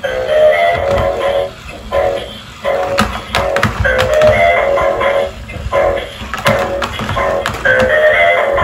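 Upbeat electronic dance tune with a synthesised singing voice, played by a battery-powered dancing robot toy as it dances, going in repeating phrases about two seconds long with sharp beats.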